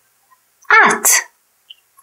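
A woman's voice speaking a single short word, ending in a brief hiss.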